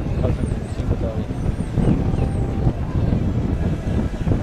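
Wind buffeting the microphone: an irregular low rumble, with faint voices of people talking in the background.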